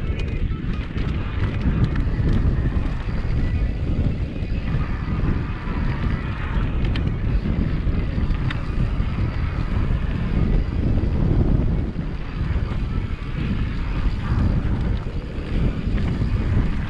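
Wind buffeting an action camera's microphone as a mountain bike rolls fast along a dirt singletrack, its tyres running over hard-packed dirt and loose stones, with a few sharp clicks from the bike and gravel.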